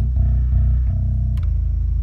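MTD bass's low B string dropped to A with a drop tuner, plucked several times so that deep low notes ring out, played loud through a Jeep's car audio system.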